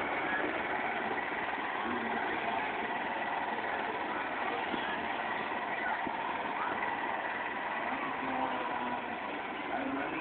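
Steady background chatter of many people outdoors, mixed with a small engine running as it tows a train of barrel cars.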